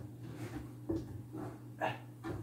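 Soaking-wet moss being pressed into place by hand: four short, soft rustles, about one every half second.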